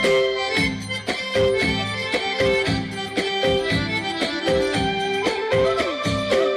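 Traditional folk-style music with a steady beat and a sustained, accordion-like melody line.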